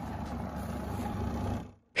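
Spin dryer of a Zarget ZWM62S twin-tub washing machine running: a steady motor hum with a whirring drum, fading out near the end.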